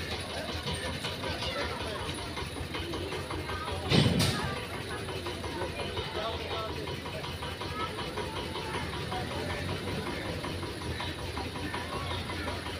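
Background murmur of distant voices over a steady low rumble, with one sudden loud thump about four seconds in.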